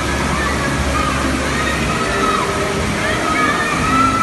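Steady rush of water pouring over artificial rocks into a lazy river, with many distant children's voices and shouts mixed in. A low hum sits under it for the first half.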